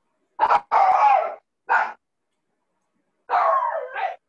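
A dog barking in a short series: three barks in the first two seconds, then a longer one near the end.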